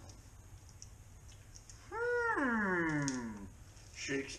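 A single drawn-out animal cry, like a dog's howl, about two seconds in: it rises briefly and then slides down in pitch over about a second and a half.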